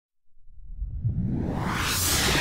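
Intro sound effect: a whoosh that swells up out of silence, rising in pitch and growing louder over about two seconds, with low music underneath.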